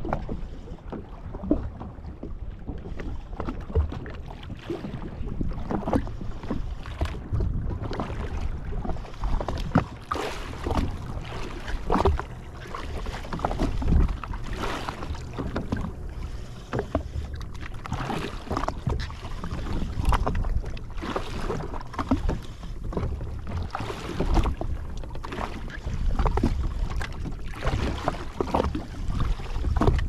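Wind rumbling on the microphone and water slapping against the hull of a drifting jetski in a choppy sea, with irregular sharp knocks and splashes every second or so.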